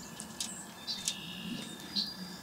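Faint bird chirps: a few short, high calls and a brief held high note about a second in, over quiet outdoor background.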